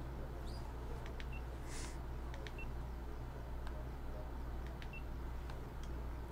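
Faint, scattered clicks of a computer mouse being used to edit in a DAW, over a steady low hum.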